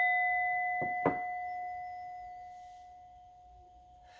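Brass singing bowl ringing out after a single strike with a wooden mallet. Its clear low tone and higher overtones fade slowly, and two faint clicks come about a second in.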